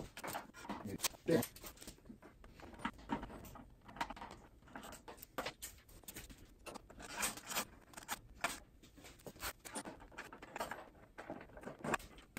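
A plastic motorcycle windscreen, held by two T25 Torx bolts, being unbolted and lifted off by hand: scattered light clicks, taps and rustles.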